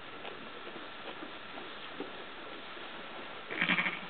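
A sheep bleats once, a short call near the end, after a few quiet seconds.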